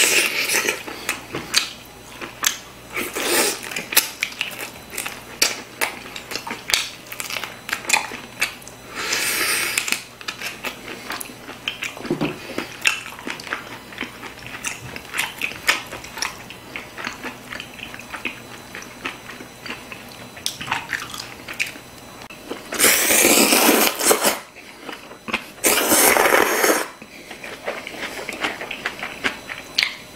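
Close-up chewing and biting of grilled marinated beef short ribs (LA galbi): many short wet clicks and smacks. A few longer, louder slurps break in, two of them close together about two-thirds of the way through, as noodles are slurped from a bowl of broth.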